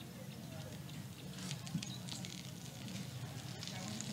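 Faint background ambience: a low hum with scattered light crackles and no clear strumming or speech.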